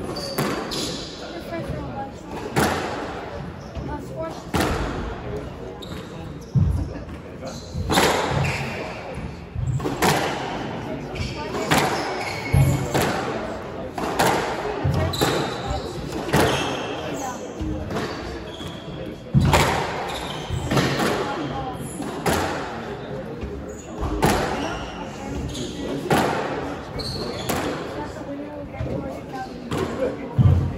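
A squash rally: the rubber ball is struck by the rackets and smacks off the court walls in sharp cracks about every second, ringing in the hard-walled court.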